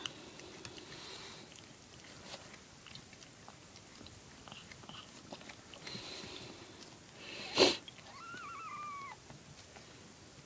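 Mother cat licking and chewing at her newborn kittens: soft wet clicking mouth sounds throughout. A short, loud burst of noise a little past halfway, then a single thin mew of a newborn kitten, about a second long, rising and then falling.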